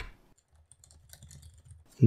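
Faint typing on a computer keyboard: a quick run of light keystrokes entering a terminal command.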